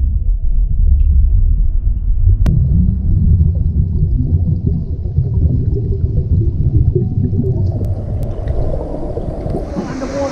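Underwater pool sound from a submerged action camera: a loud, muffled low rumble of churned water as a swimmer moves past, with a faint steady hum for the first two seconds or so and one sharp tick about two and a half seconds in. Near the end the sound grows brighter and splashier as the camera nears the surface.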